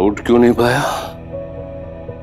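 A man's short pained cries, three quick vocal bursts in the first second, as he struggles with a leg that won't move, over sustained dramatic background music.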